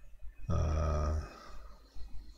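A man's short, low-pitched wordless voice sound on a steady pitch, starting about half a second in and lasting under a second.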